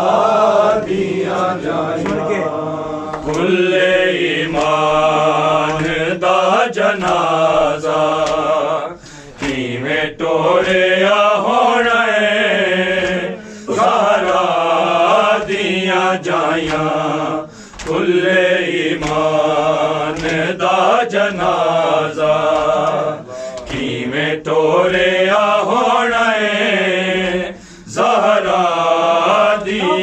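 Men's voices chanting a noha, a Shia mourning lament, in long sung phrases of about four to five seconds, each followed by a brief break.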